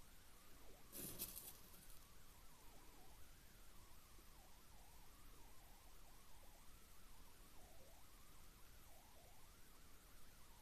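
Near silence: quiet room tone, with one brief rustle of handling about a second in and faint wavering tones in the background.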